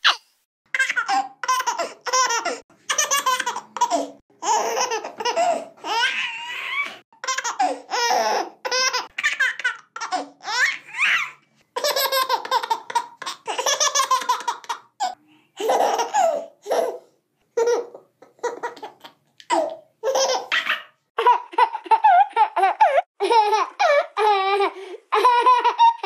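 A baby laughing in repeated short bursts of giggles and squeals, with brief pauses between bursts.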